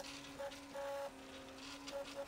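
Stepper motors of a MakerFarm Prusa i3 3D printer whining faintly during a print. A few steady tones switch and shift in pitch every fraction of a second as the print head changes moves.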